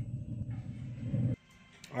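Green Mountain pellet grill running with its lid open, its fan giving a steady low hum that cuts off suddenly about two-thirds of the way through, leaving near silence.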